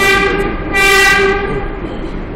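R142A subway train horn sounding two toots, a short one and then a longer, louder one just under a second later, over the running noise of the train.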